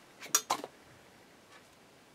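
Two or three short, crisp clicks and rustles of a stiff paper card being handled, about half a second in.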